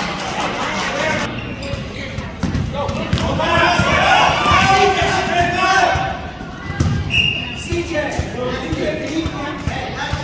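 A basketball bouncing on a gym floor amid players' footsteps, with spectators' voices swelling in the middle, in a large echoing gym. A brief high squeak comes about seven seconds in.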